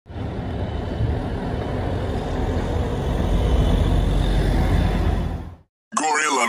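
Steady street traffic noise, a low rumble of passing road vehicles, that cuts off suddenly about half a second before the end.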